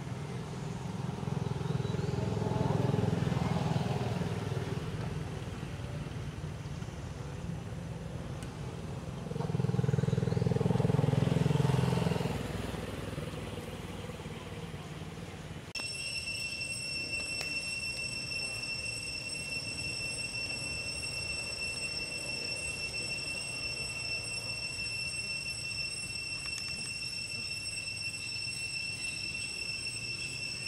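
A motor vehicle's engine rumbles past twice, swelling and fading, the second pass louder, about ten seconds in. About halfway through, a steady high-pitched insect drone starts and runs on unchanged.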